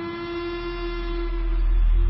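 A steady, held tone with a deep rumble beneath it that swells louder toward the end: a dramatic build-up in the film's soundtrack.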